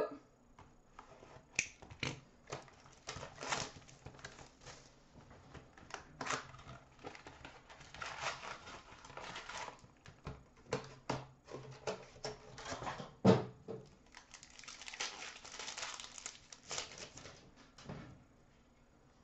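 Card pack wrappers and a cardboard hobby box of hockey cards being handled and opened by hand: stretches of crinkling and tearing, broken up by small clicks and taps of packs and cards being set down, with one louder knock about two-thirds of the way through.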